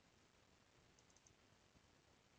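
Near silence with a quick run of about four faint computer mouse clicks about a second in.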